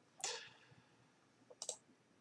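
Faint computer mouse clicks: a quick cluster of two or three clicks about one and a half seconds in, after a soft breath.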